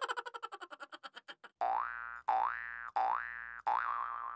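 Cartoon comedy sound effects: a fast rattling run of short pulses that dies away, then four identical rising 'boing'-like whoops, the last one wobbling at the top.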